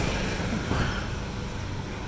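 Street traffic: a motorbike engine that has just passed fades away, over a steady wash of road noise.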